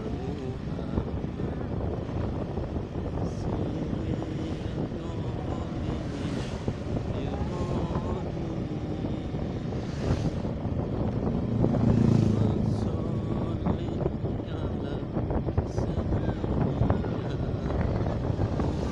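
Motorcycle riding along a road: engine running steadily with wind and road noise on the microphone, growing louder for a moment about twelve seconds in.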